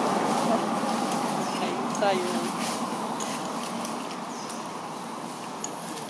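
Steady outdoor rushing noise that slowly fades away, with one short call falling in pitch about two seconds in.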